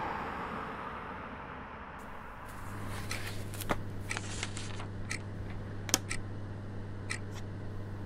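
Quiet room tone with a steady low hum that comes in a couple of seconds in, and a scattering of light clicks and rustles from papers being handled on a desk.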